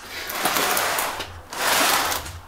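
Handling noise from a Boosted Board electric skateboard gripped by its rear belt-drive motor truck: two swells of rubbing and whirring, the second, near the end, the louder.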